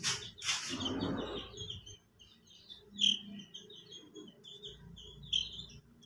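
Young chicks peeping: many short, high chirps in quick succession, beginning about a second and a half in. At the start, a couple of knocks and rustling as a chick is handled.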